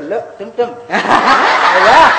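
Audience laughter starts about a second in and stays loud, after a short stretch of a man speaking.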